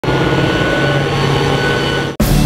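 A loud, steady engine drone with several thin, high whining tones held through it.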